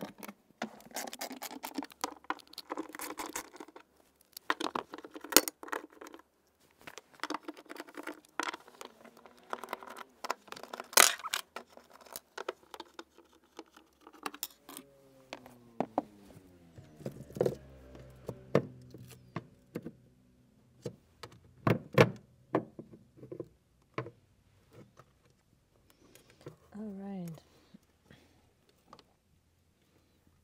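Ratchet wrench with a 10 mm socket clicking as the bolts of a car's fuel-pump access cover are undone, with scattered sharp clinks and knocks of the tool and loose bolts. A low tone glides down and holds for a few seconds around the middle.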